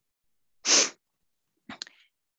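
A person's short, sharp, breathy burst close to the microphone, such as a quick sniff or stifled sneeze, followed near the end by a few faint mouth clicks.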